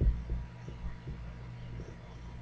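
Steady low electrical hum with a few soft, dull thumps, the strongest about at the start.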